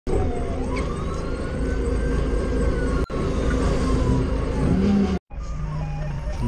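Forklift engine running with a steady low rumble, under a siren-like wail that rises and then slowly falls over about four seconds. The sound cuts out briefly about three seconds in and again just after five seconds.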